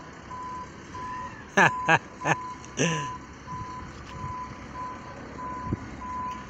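Truck reversing alarm beeping steadily, one high tone about one and a half times a second, with a few sharp clatters about two to three seconds in.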